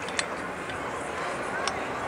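Steady outdoor street background noise with no clear voice, broken by two brief clicks, one just after the start and one near the end.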